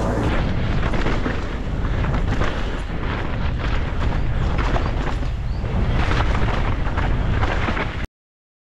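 Downhill mountain bike being ridden fast down a dirt forest trail, heard from a helmet-mounted action camera: steady wind rumble on the microphone with many knocks and rattles from the tyres and bike over roots and ruts. It cuts off suddenly at the end.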